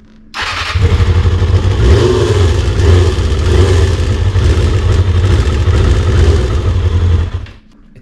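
Kawasaki ZXR250 inline-four motorcycle engine starting up and running at a steady fast idle, cold and a bit rough on its old carburettors. It stops suddenly a little before the end.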